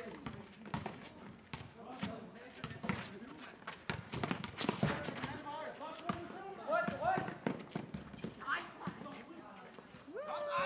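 Basketball game on a paved court: the ball bouncing and players' running footsteps and shoe scuffs as a string of sharp knocks, with players calling out to each other near the end.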